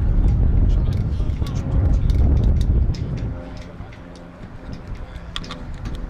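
Wind rumbling on the microphone, loudest for the first three seconds and then easing. After it, faint distant voices and a few sharp clicks come through near the end.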